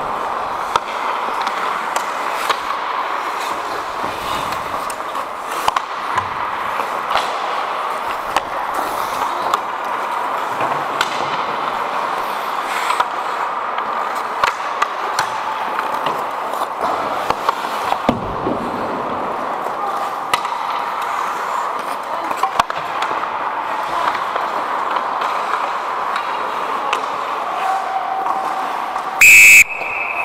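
Ice hockey play: skate blades carving and scraping on the ice with sharp clacks of sticks and puck. Near the end a loud, short blast of the referee's whistle stops play.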